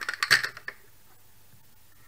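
Clear plastic punnet of cherry tomatoes shifted across a plastic cutting board, the plastic knocking and the tomatoes rattling inside it in a short clatter over the first half-second or so.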